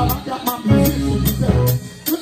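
Live church band music: a drum kit's cymbal struck with a stick in a steady beat, about two to three strokes a second, over a sustained bass line.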